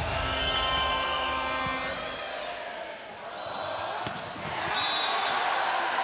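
Volleyball being struck during a rally, a few sharp smacks of the ball over steady arena crowd noise.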